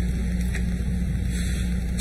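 A steady low hum and rumble with no speech, unchanging throughout.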